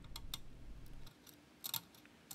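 A few faint, short clicks, spaced irregularly, over quiet background.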